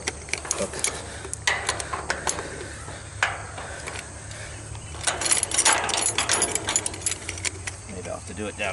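Metal rigging hardware being handled: shackles, a hook and a crane scale clinking and rattling against the cable and the aluminum tower. Scattered sharp clicks, with a busier stretch of clinking and rustling about five to seven seconds in.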